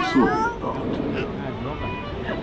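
People's voices talking, one high voice rising and falling sharply in the first half second, then quieter chatter.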